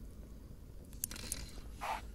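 Quiet tackle noise as a hooked fish is reeled in on a spinning rod: a few soft clicks about a second in and a short rustle near the end, over a low steady rumble.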